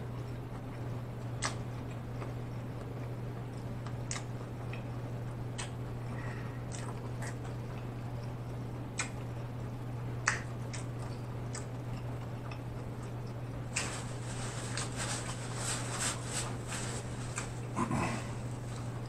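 Close-miked mouth chewing: scattered wet smacks and clicks, coming thicker in the last few seconds, over a steady low hum.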